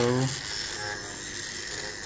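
Small DC motor running steadily under a 555-timer PWM drive, with a steady high tone.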